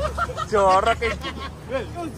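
Young men's voices in lively chatter, with one loud drawn-out call about half a second in, over a low steady hum.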